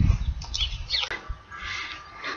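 Small birds chirping in the background, a few short up-and-down calls about half a second in, over a low rumble at the start.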